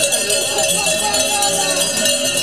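Livestock bells (cowbells) ringing continuously over the chatter of a crowd.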